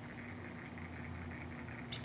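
Quiet room tone with a faint steady hum and no distinct events.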